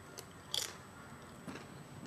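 Tortilla chip being bitten and chewed with the mouth full: a few short, crisp crunches, the loudest about half a second in, then fainter chewing.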